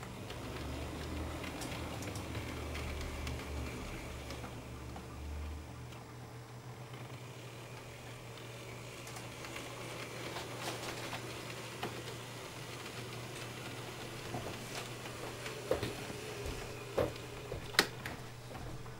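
Faint steady hum of an N-scale model diesel locomotive running along the track with its freight cars. A few sharp clicks come near the end as a hand works the layout's fascia controls.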